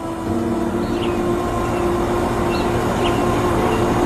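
A steady low hum of several held tones, with a few faint short bird-like chirps.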